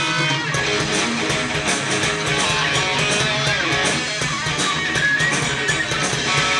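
A rock band playing live through a PA, an instrumental passage with no vocals: two electric guitars and a bass guitar over a steady drum beat.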